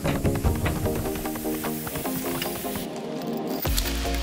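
Background music with a steady beat; near the end the bass drops out briefly and then a deep bass line comes in.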